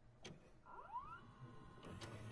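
Faint videocassette recorder mechanism sound: a short motor whine rising in pitch and then holding steady, ending in a click near the end as play engages.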